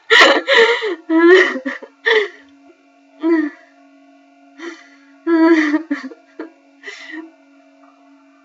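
A young woman laughing in short breathy bursts through tears, turning to whimpering and gasping sobs with pauses between them.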